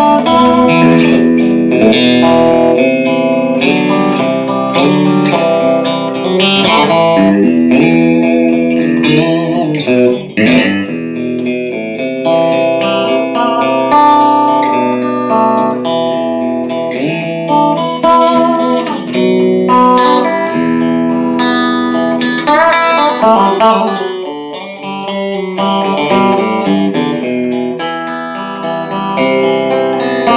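Electric guitar, a Fender Stratocaster played through a combo amp on a clean tone: a solo passage of melody lines and chords with a few string bends.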